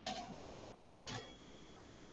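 Two faint computer mouse clicks about a second apart, over low background hiss.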